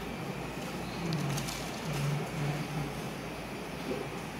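Steady room hum from air conditioning and running desktop computers, with a faint, low man's voice in the distance for a couple of seconds in the middle.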